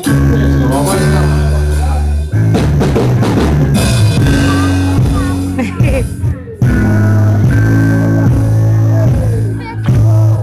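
Male gospel singer with a live church band: drums, guitar and sustained bass chords changing every two seconds or so under his voice, recorded loud through the church's sound system.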